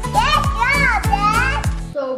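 A child's voice making excited, wordless sing-song sounds that sweep up and down in pitch, over background music with a steady kick-drum beat.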